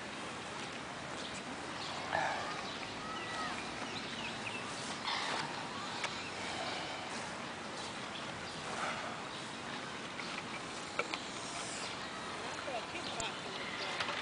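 Steady outdoor background hiss with faint, distant voices calling out a few times.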